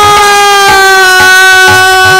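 Kirtan music: one long held melodic note, easing slightly down in pitch at first, over hand-drum strokes about twice a second.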